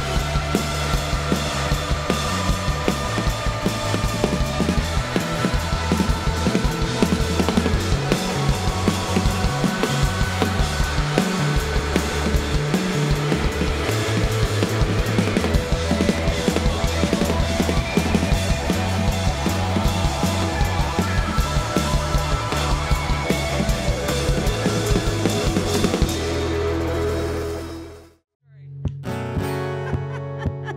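A live rock band playing, with drum kit, electric guitar and bass driving a steady beat. About 26 seconds in, the song ends on a held chord that fades out, and after a brief silence an acoustic guitar begins strumming.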